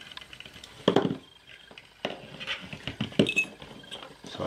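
Small metal parts being handled as the anodized aluminium knob comes off the toggle switch and the parts are set down: a sharp knock about a second in, then a run of light clicks and knocks.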